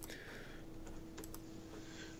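A few faint clicks from a computer keyboard and mouse, over a low steady hum.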